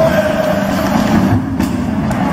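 The video's own sound of a large assembly hall, cutting in suddenly and loud: a dense din of the hall with one held note over it for about the first second.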